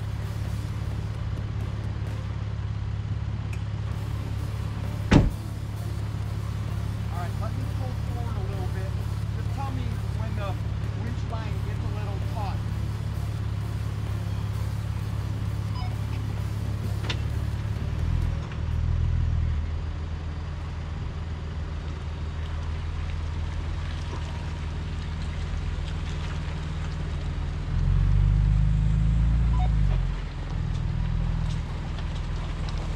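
A Ford Bronco's engine idling, with one sharp slam, likely its door shutting, about five seconds in. The engine revs up briefly at around eighteen seconds and again near the end as the Bronco drives forward out of the mud rut.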